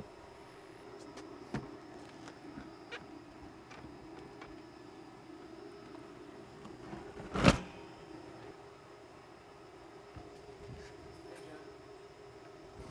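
Faint knocks and rubs of a vinyl window frame being handled into a masonry opening, with one sharp, louder knock a little past halfway, over a faint steady hum.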